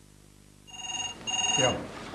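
Telephone ringing once in the British double-ring pattern: two short electronic rings with a brief gap between them.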